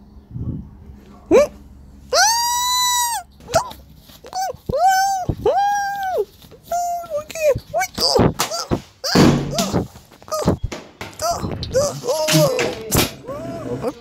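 High-pitched wordless vocal cries and whimpers, a string of wails that each rise and fall in pitch, the longest about two seconds in, with several sharp thunks in between.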